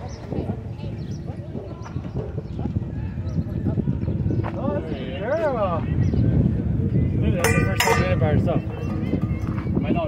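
A dog vocalizing among dogs at play: a wavering, howl-like whine that rises and falls for about a second about five seconds in, then a harsher, noisier call near eight seconds, over a steady background of park noise.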